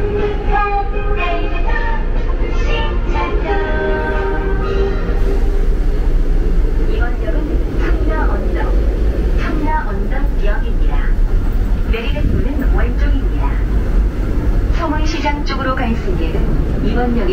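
Interior noise of a Daegu Metro Line 2 subway car running, as it nears a station: a steady low rumble. A voice is heard over it in the first few seconds.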